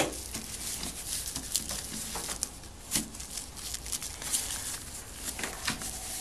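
Crinkling and rustling of the clear plastic film and trimmed foam scraps as hands work at the edge of a foam-in-place wheelchair back cushion, in many small irregular crackles. A sharp click right at the start is the loudest sound.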